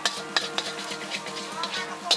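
A metal spatula scraping and clanking against a wok as rice noodles with egg are stir-fried for kuay teow khua gai. Sharp clinks come every few tenths of a second over a steady sizzle of frying.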